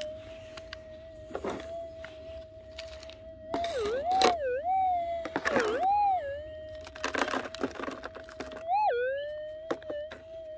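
Minelab GPZ 7000 metal detector's steady threshold tone, warbling down and up in pitch three times as a scoop of soil holding a sub-gram gold nugget is passed over its 12-inch Nugget Finder coil: the target signal, showing the nugget is in the scoop. Soil rattles in the plastic scoop as it moves.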